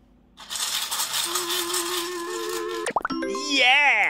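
A busy rattle, like a shaker, with a few steady musical notes running through it. It cuts off with a sharp click about three seconds in and is followed by a cartoonish voice-like call that wavers and slides down in pitch.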